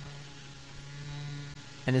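A steady low drone held on one pitch, with a faint hiss above it; a man's voice starts right at the end.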